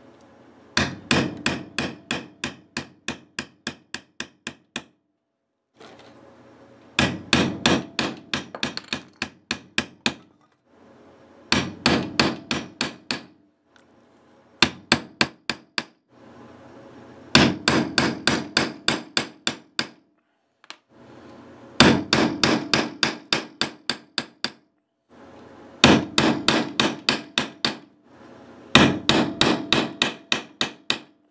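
Quick series of hard blows on a guitar's wooden body, in about eight bursts with short pauses between them, roughly three or four blows a second: the finish is being beaten to scar it.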